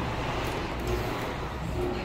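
Indoor restaurant ambience: a steady low rumble with a faint murmur of distant voices.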